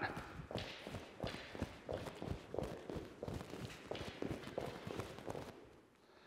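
Quick footsteps of sneakers on a gym floor mat during a push-stance footwork drill, the feet pushing in and out along an agility ladder. The steps come about three a second and stop about five and a half seconds in.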